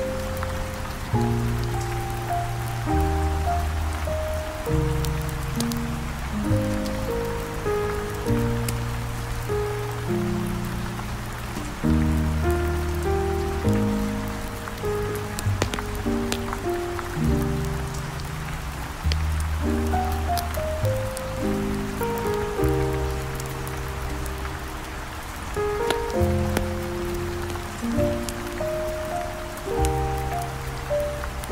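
Slow, smooth jazz with a deep bass line and sustained chords that change every second or two, laid over steady rain with scattered sharp ticks.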